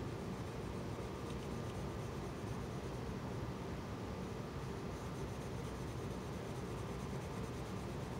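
Coloured pencil shading on paper: a faint, steady scratching of the lead rubbing across the sheet.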